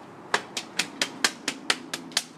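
A rapid run of sharp, evenly spaced clicks, about four or five a second, starting about a third of a second in.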